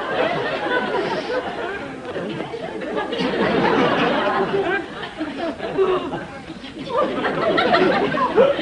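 Studio audience laughing, a dense, sustained laugh from many people that eases about five seconds in and swells again near the end.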